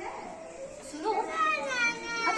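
Children's voices and chatter in a room. About a second in, a child's high voice rises into a drawn-out call.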